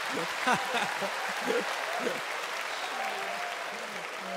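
Studio audience applauding steadily, with a few voices over the clapping in the first two seconds.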